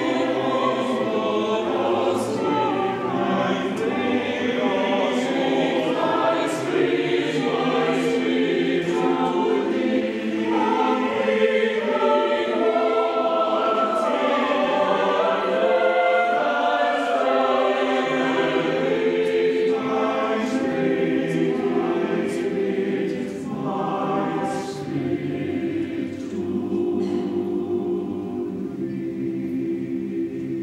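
Church choir of mixed men's and women's voices singing together, a little softer near the end.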